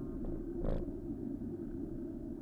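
Steady low rumble of wind and road noise on a bicycle-mounted camera's microphone while riding, with one brief sharp noise a little under a second in.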